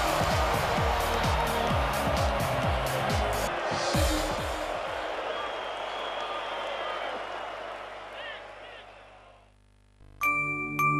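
Television advertisement soundtrack: music under a loud, hissing wash of noise, with a run of falling swoops and sharp clicks in the first four seconds. It then fades out steadily and is almost silent near the end.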